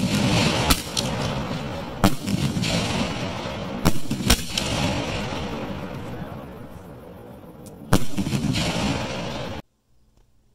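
1.75-inch reloadable aerial firework shells bursting: about five sharp reports a second or two apart, each followed by a hissing, crackling tail. The sound cuts off suddenly near the end.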